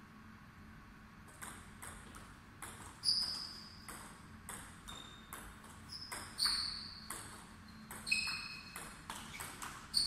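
Table tennis ball being hit: a few light taps first, then a rally of sharp clicks as the plastic ball strikes the paddles and bounces on the table. The hardest hits ring with a short high ping, coming roughly every one to two seconds.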